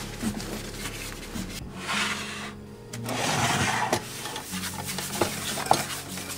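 A cleaning cloth rubbing and scrubbing a wooden counter in rough strokes, loudest around the middle, with a few light clicks near the end, over soft background music.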